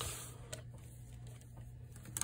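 Quiet room tone with a steady low hum and a single faint click about half a second in, as multimeter test probes are lifted off the battery terminals.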